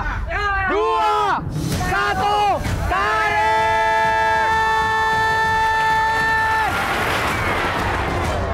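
A group of men shouting a count in unison, breaking into one long held shout as they haul on the rope, which stops about two-thirds of the way in. Then comes a noisy crash as the wooden, clay-tile-roofed house collapses.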